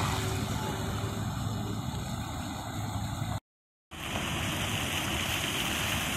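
Fountain jets splashing into the basin, a steady rush of falling water over a low hum. The sound cuts out for half a second about three and a half seconds in, then returns with a brighter splash.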